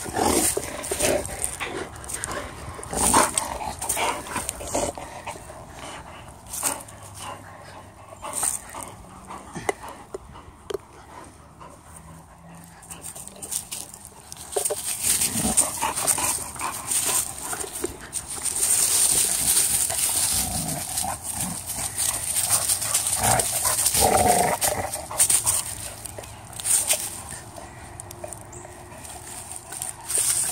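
Two large dogs play-fighting close up over a rubber chew toy, with intermittent dog vocal sounds and scuffling, louder and busier in the second half.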